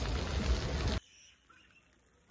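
A steady rush of outdoor background noise with a low rumble, which cuts off abruptly about a second in and leaves near silence.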